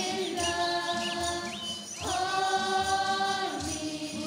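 Background music: a choir singing long held chords over a soft, steady low beat, with the chord changing about halfway through.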